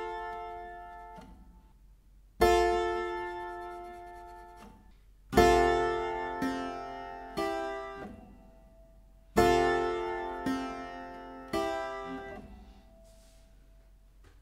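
Clavichord notes and chords, each struck and left to ring and die away; seven come in at uneven spacing, a few together around the middle.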